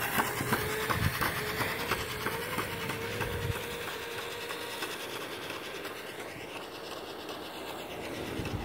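Razor E100 Glow electric scooter's chain-driven motor whining as it rides off, its pitch rising a little over the first few seconds and then fading as it gets farther away, with a run of light regular clicks.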